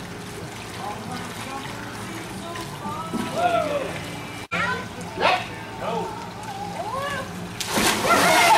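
Pool water splashing and sloshing as a small child paddles, with children's high calls over it. A big splash near the end as someone plunges into the pool.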